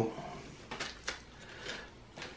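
Faint handling noise: a few light clicks and rustles as a hand picks up small injection-moulded plastic propellers.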